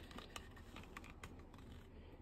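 Near silence with a few faint, sharp clicks from a handheld VAG KEY Login code reader being handled while it starts up.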